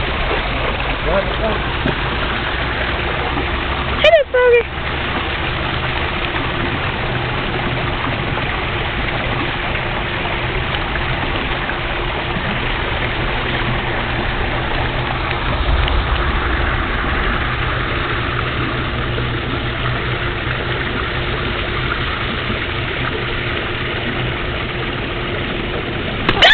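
A machine running with a steady hum and hiss. About four seconds in, a person makes one short vocal sound.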